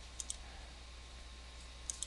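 Faint computer mouse clicks: a quick pair a fraction of a second in and one more near the end, over a low steady background hum.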